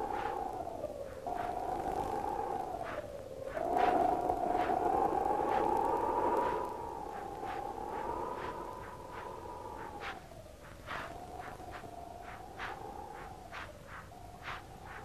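Wind howling: a whistling tone that slowly rises and falls, swelling into a louder rushing gust from about four to six and a half seconds in, with scattered sharp clicks throughout.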